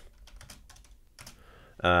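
Computer keyboard typing: a handful of light, irregular keystrokes.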